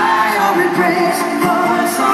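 Live rock band in concert with a sung vocal line held on long notes, echoing in a large arena hall.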